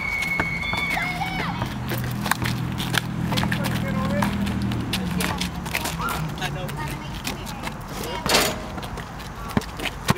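Sounds of a pickup basketball game on an asphalt court: a ball bouncing and sharp knocks and scuffs from play, with indistinct voices and a low steady hum underneath. One louder sharp sound comes about eight seconds in.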